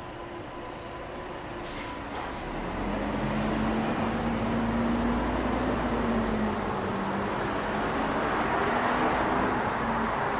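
Traffic on a wide city road. About three seconds in, a vehicle's engine grows louder, its note rising a little and then falling back, over a steady hiss of tyres.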